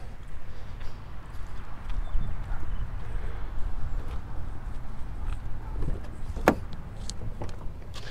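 Footsteps on asphalt over a steady low rumble, then one sharp click about six and a half seconds in: the door latch of a 2008 GMC Sierra 1500 being opened.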